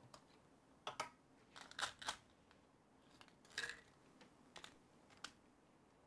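Faint clicks and scrapes of a small plastic supplement bottle being handled as its cap is twisted off: a few sharp clicks, one longer scrape about three and a half seconds in, then two single clicks.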